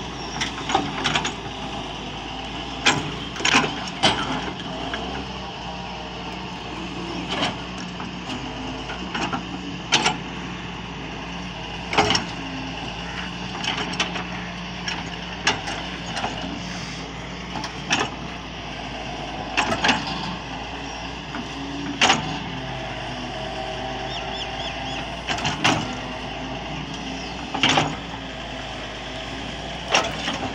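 Doosan DX140 excavator's diesel engine running steadily under hydraulic load, with sharp knocks and clanks every second or two as the bucket strikes and scrapes the soil during ground leveling.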